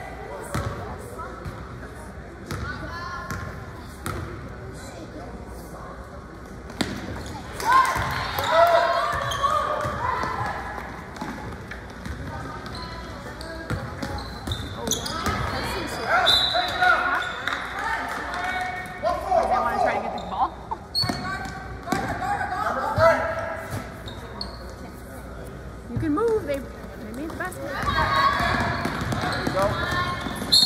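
Basketball bouncing on a hardwood gym floor during play, sharp thuds recurring throughout, with players and spectators shouting in the echoing gym.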